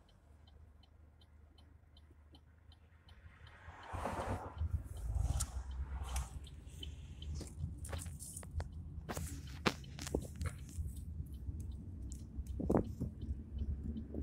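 Inside a car: faint, evenly spaced ticking for about four seconds, then the low rumble of the car moving off comes up and stays. Scattered knocks and rubbing from the phone being handled sit on top of the rumble.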